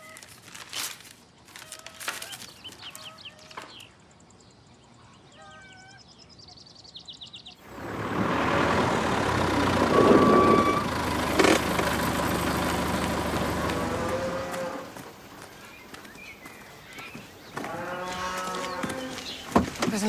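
Paper rustles faintly as an airmail envelope is opened. About eight seconds in, an old tractor's engine starts up loud and steady, then drops away about six seconds later.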